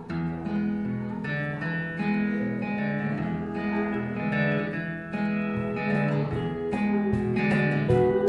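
Instrumental intro of a country song: an acoustic guitar strummed in a steady rhythm, with a steel guitar playing along in held and sliding notes.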